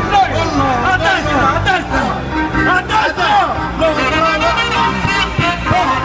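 A live festival band with saxophones, a keyboard and an electric guitar, playing with a man singing in a wavering voice over steady bass notes, and a crowd's hubbub underneath.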